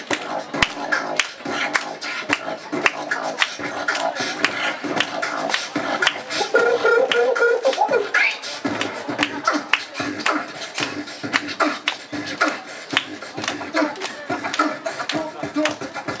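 Two beatboxers performing live into handheld microphones through a PA, a fast run of mouth-made drum hits and clicks. About six and a half seconds in, a held humming tone comes in over the beat and slides upward as it ends about eight seconds in.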